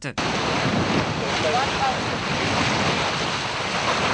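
Steady seaside ambience: a constant rush of wind on the microphone over small waves breaking on the shore, with a few faint distant voices.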